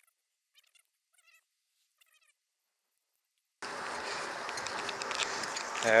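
Near silence with a few faint, short, high chirps, then a little over halfway in a steady rush of wind and road noise from the moving bicycle cuts in abruptly.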